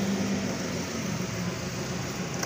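Steady background hum and hiss, with no distinct clicks or knocks.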